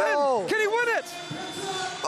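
Excited shouting in the arena: a couple of drawn-out, rising-and-falling yells in the first second over the crowd's noise, then a quieter crowd murmur.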